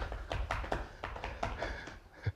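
Hands tapping a surface in a quick, irregular run of light taps.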